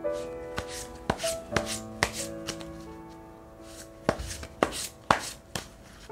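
Tarot cards being shuffled in the hands, giving sharp irregular clicks and snaps, over soft background music with sustained notes.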